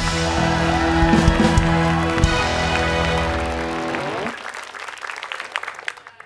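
Live band of drum kit, electric guitar and keyboard playing a held closing chord with drum hits, which rings out and fades about four seconds in, followed by scattered clapping.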